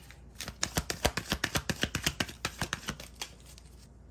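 A tarot deck being shuffled by hand: a rapid run of card clicks and flicks, many a second, stopping about three seconds in.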